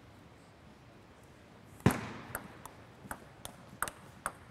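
Table tennis point: after a quiet start, a loud knock just before two seconds in opens the point. The plastic ball then clicks sharply off bats and table about three times a second.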